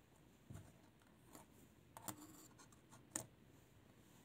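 Faint, short taps and clicks of a smartphone circuit board being picked up and turned over on a wooden tabletop: four small knocks, the loudest about three seconds in.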